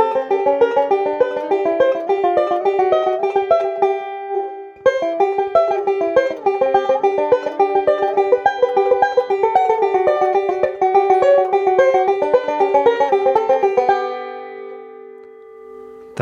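Banjo picked in a double index roll (middle, index, thumb, index), a fast, even run of notes with a rollicking sound. The run breaks off briefly about four seconds in, and near the end the last notes are left ringing and fade out.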